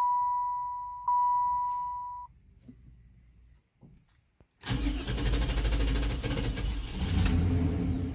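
A dashboard warning chime rings, struck again about a second in, and fades out. About four and a half seconds in, the starter suddenly cranks the Cadillac Fleetwood's V8, cranking on and on in a long hard start, the sign of a failing fuel pump.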